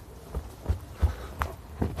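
A run of dull thuds on the lawn close to a camera lying in the grass, about two or three a second, from running footfalls.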